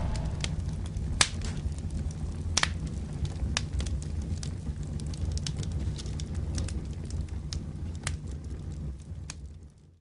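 Fire sound effect: a low rumble of burning flames with scattered sharp crackles and pops, fading out in the last second.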